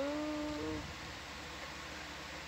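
A person's drawn-out "ooh", rising in pitch and then held, lasting under a second. Then only a steady low background hum.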